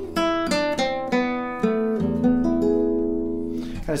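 Classical guitar played fingerstyle: a short run of single plucked notes over a bass, played freely with the tempo speeding up and slowing down, settling about halfway through onto a long-held E major chord with the open low E string ringing under it.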